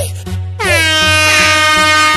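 Intro music with a bass-heavy hip-hop beat. About half a second in, a loud air-horn sound effect comes in: it bends down in pitch at the start, then holds steady.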